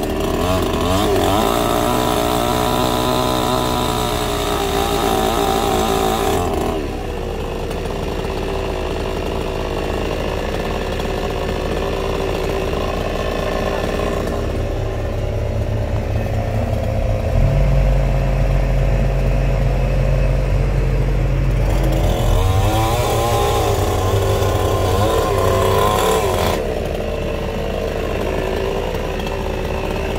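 Chainsaw cutting branches at full revs for the first six or so seconds and again from about 22 to 26 seconds, easing off in between, over a steady low engine hum. A deeper, louder engine drone comes in from about 17 to 22 seconds.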